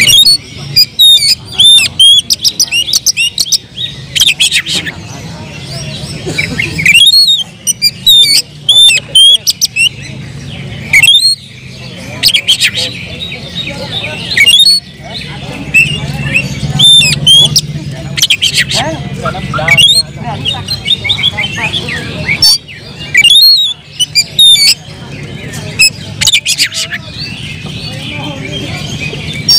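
Male oriental magpie-robin (kacer) singing loudly in its fighting mood: rapid, varied runs of sharp whistles, chirps and harsh squawks in bursts, with brief pauses between phrases.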